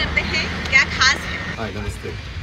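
Brief bits of indistinct speech over a steady low background rumble.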